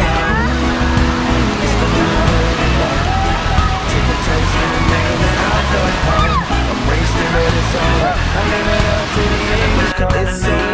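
Background music with a steady beat laid over the hubbub of an indoor water-park splash pad: water spraying from fountains and children's voices.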